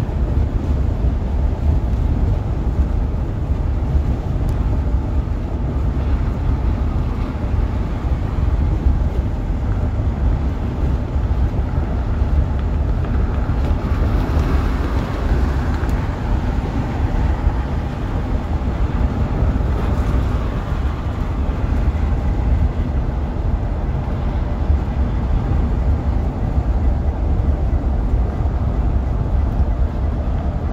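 2008 Blue Bird school bus cruising at freeway speed, heard from inside the cabin: a steady low rumble of engine and tyres on the road, swelling slightly about halfway through.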